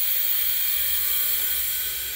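Compressed air hissing steadily through a slowly opened ball valve into thermofusion pipework: the line filling with air from the compressor.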